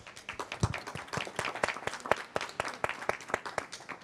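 A small audience applauding: many scattered hand claps that stop just before the end.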